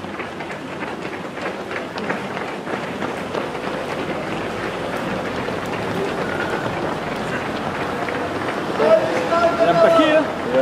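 Footfalls of many runners on asphalt as a pack passes, over a murmur of spectators' voices; a voice calls out louder near the end.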